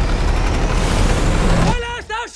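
Loud rumbling storm noise of wind, rain and sea, which drops away near the end, followed by a brief voice.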